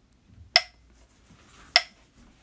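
Metronome clicking at 50 beats per minute: two sharp clicks about 1.2 seconds apart.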